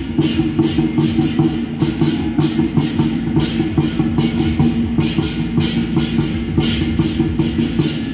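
Temple ritual percussion music: drums beaten in rapid, irregular strokes over a steady low ringing tone.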